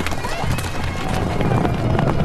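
Many horses galloping, their hooves clattering, mixed with film score music and voices in a movie soundtrack.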